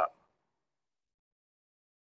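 Dead silence: the sound track drops out completely, with no room tone at all.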